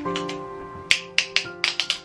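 Sharp plastic clicks and snaps, about six in the second second, irregularly spaced, from a plastic car phone holder's clamp being handled and adjusted. Soft background music with held notes plays underneath.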